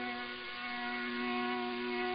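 Faint sustained drone of an accompanying instrument: one held note with a stack of steady overtones, growing slightly louder, left sounding between sung lines of a folk song.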